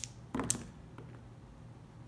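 Two six-sided dice landing in a leather-lined dice tray: a short clatter about half a second in, then one faint tap as they settle.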